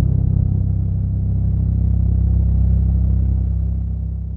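Deep cinematic boom from a logo intro sting, its low rumbling drone holding steady and then beginning to fade near the end.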